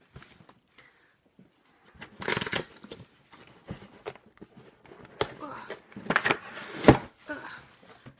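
Cardboard shipping box being opened by hand: tearing and rustling in several short bursts, with a sharp snap about seven seconds in, the loudest moment.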